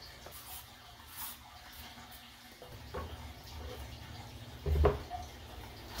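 Faint scraping strokes of a hand peeler on winter melon skin, then light knocks on a wooden chopping board, the loudest about five seconds in.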